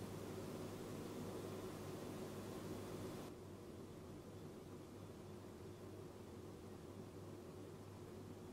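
Faint room tone: a steady low hiss with a light low hum, the hiss dropping a little about three seconds in. No distinct sound stands out.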